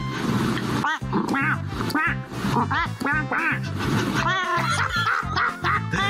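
A black-and-white cat giving a string of short, duck-like quacking calls, played over background music with a steady beat.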